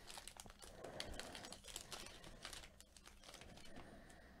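Faint crinkling and crackling of a foil trading-card pack wrapper being handled and torn open, a scatter of small irregular clicks that thins out toward the end.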